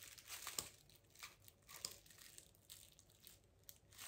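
Faint clicks and rustles of small hand pruning shears being handled while the locking catch is worked back to hold the blades closed.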